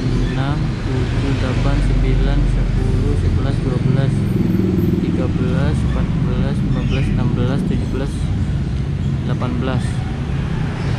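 A voice counting aloud in Indonesian, unhurried, over a steady low rumble in the background.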